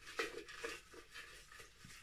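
Faint rustling of folded paper slips being stirred by hand inside a glass jar, with light scrapes against the glass; the loudest rustle comes just after the start.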